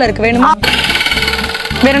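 Background music with a steady low beat, with a woman talking at first; about half a second in, a high, rapidly pulsing electronic buzz sound effect takes over for about a second and a half.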